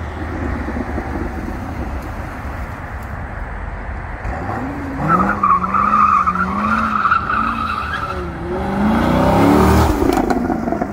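Chevrolet C6 Corvette's LS2 V8 running as the car drives. About five seconds in, a tire squeal sets in over a wavering engine note for about three seconds as the car turns. Near the end the engine revs up in a rising note as the car accelerates away.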